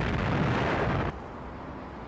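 Explosion sound effect: a dense rumbling blast that holds steady, then cuts off sharply about a second in, leaving a quieter low rumble.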